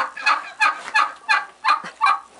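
A broody sitting bird, disturbed on its nest as its egg is taken, giving a fast run of short, harsh calls, about three a second.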